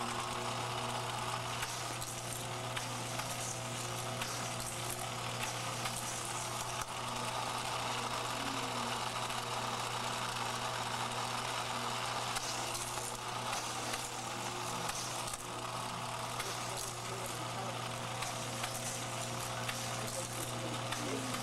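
Motorized micro-scale Hot Wheels track set running: a steady electric whir with small plastic cars rattling along the track, at an even level throughout.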